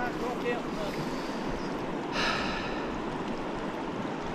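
A shallow stream running steadily over a stony bed, with a brief hissing rustle about two seconds in.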